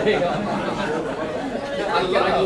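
Indistinct chatter: several people talking at once in a large room.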